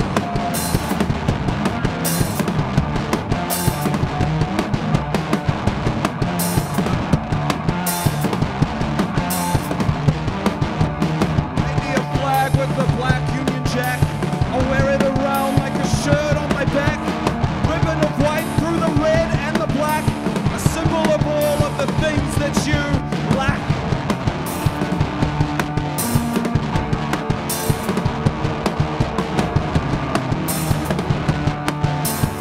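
Live rock band playing an instrumental passage: electric guitar over a drum kit, with held low notes and regular snare and cymbal hits.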